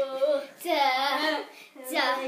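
A child singing a wordless 'da da da' tune, held sung notes one after another with short breaks between them.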